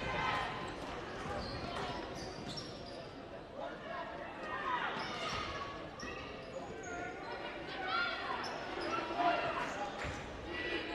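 A basketball bouncing and being dribbled on a hardwood gym floor during live play, in the echo of a large gym.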